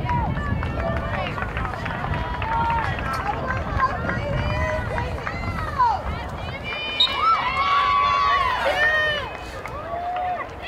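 Spectators chatting indistinctly on the sideline, several overlapping voices with no clear words, louder near the end. A low rumble on the microphone runs under them and fades about halfway.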